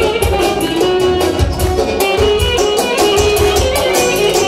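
Live dance music: a clarinet carries the melody over a steady, evenly pulsing drum beat.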